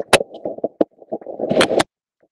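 Fabric of a top rubbing and scraping directly over earbud microphones as the top is pulled off over the head, with sharp knocks of the earbuds being jostled loose. The noise comes in uneven bursts, loudest near the end, then cuts off suddenly.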